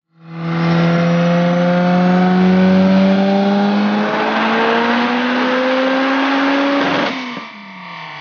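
Turbocharged 1.8-litre 16-valve VW four-cylinder in a Golf 2 Rallye, on its stock ABF cylinder head with a GT4094R turbo, making a full-throttle pull on a chassis dyno. The engine note climbs steadily in pitch for about seven seconds. Then the throttle is closed with a short crackle, and the revs fall away as the engine coasts down.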